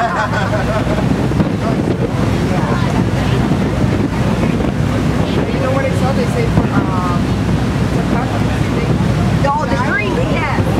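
Steady wind buffeting the microphone on a moving boat, over the low running of the boat's engine and the wash of lake water.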